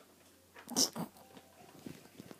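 A baby's short vocal squeal about a second in, followed by a few softer baby sounds.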